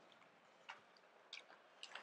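Near silence, broken by three faint, short clicks.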